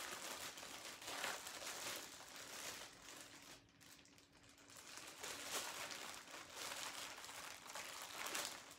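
Clear plastic bag crinkling as it is handled and pulled open by hand, briefly quieter about halfway through.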